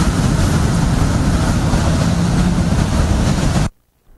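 Loud, steady rumbling noise with a faint low hum running through it, cut off abruptly about three and a half seconds in.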